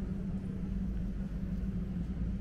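Steady low hum and rumble of airport terminal background noise, with one unchanging low droning note.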